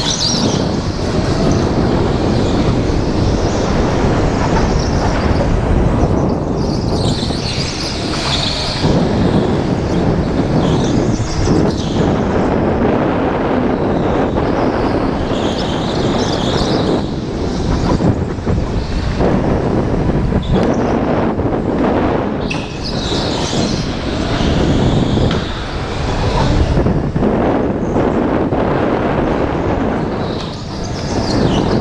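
Onboard sound of a go-kart at race speed on an indoor concrete track: loud, steady drive and tyre noise mixed with wind buffeting on the kart-mounted camera's microphone. Higher hissing patches come back every several seconds as the kart goes through the corners.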